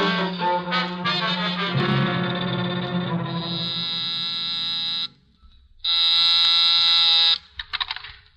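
Brass-led orchestral radio-drama music cue that ends about five seconds in. After a short pause a telephone rings, one steady ring lasting about a second and a half.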